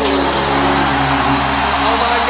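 Live rock-blues band music with held notes ringing on, one note sliding down in pitch at the start.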